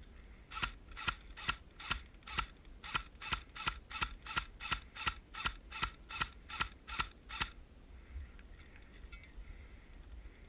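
AK-pattern airsoft rifle firing single shots in steady succession, about eighteen sharp cracks a little over two a second, stopping about seven and a half seconds in.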